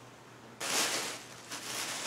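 Clothing fabric rustling as garments are handled, set down and picked up. It starts about half a second in and fades somewhat after a second.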